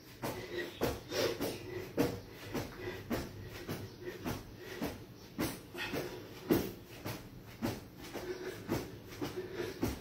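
Trainer-clad feet landing on a foam yoga mat during plank jacks, a steady run of soft thumps about two a second, with the exerciser's breathing between them.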